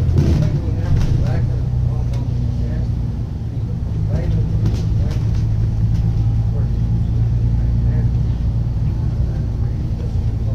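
Alexander Dennis Enviro 500 double-decker bus's diesel engine running, heard from inside the passenger saloon as a steady low drone.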